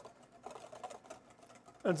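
Faint, quick clicking of a wire whisk against a stainless steel bowl as egg yolks and cold water are beaten over a double boiler, cooking toward the ribbony sabayon stage for hollandaise.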